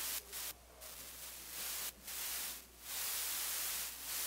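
Bursts of hiss-like static cutting in and out abruptly four or five times, over a steady low hum.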